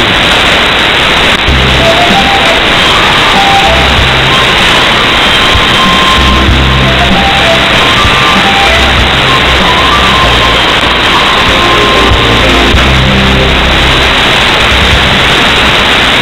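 Music received over a shortwave AM broadcast, buried in heavy, steady static hiss. Short bass notes and a thin melody come and go under the noise.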